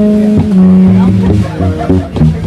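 Live jazz quartet: tenor saxophone playing held notes, one long note in the middle, over electric bass, piano and drums with cymbals.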